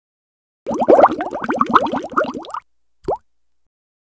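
Cartoon bubbling 'bloop' sound effect for an animated logo: a quick run of short rising plops, about ten a second, for about two seconds, then one last plop a moment later.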